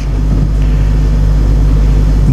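A steady low hum with no other events.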